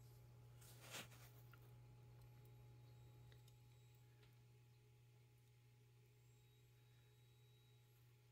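Near silence: room tone with a faint steady low hum and one soft, brief noise about a second in.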